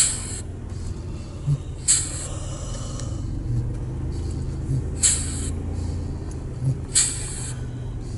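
Inside a car driving slowly: a steady low engine and road hum, with four short hissing bursts a couple of seconds apart.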